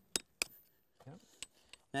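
Hammer tapping a metal chisel into the rock around a fossil bone: four sharp, separate clicks, the first two close together and the last two about a second later.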